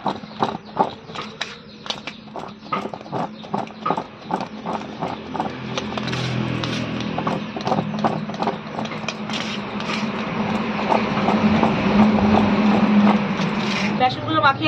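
Boiled potatoes knocking and rolling against a steel plate as it is shaken to coat them in gram flour: a quick run of irregular clacks that thickens into a denser, louder rattle over a low steady hum in the second half.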